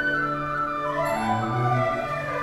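Chinese traditional orchestra playing a slow, sustained passage: a melody line falls and then rises over held low notes.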